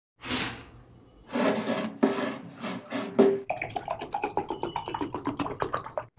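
Fruit juice poured into a glass beer mug in three pours, with a ringing tone as the glass fills, followed by a quick run of short drinking gulps.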